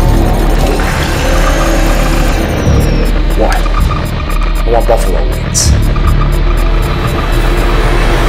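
Film-trailer soundtrack: music over a deep steady drone, with short voice-like sounds about three and a half and five seconds in.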